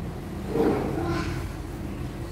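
A brief, quiet voice about half a second in, over a steady low hum.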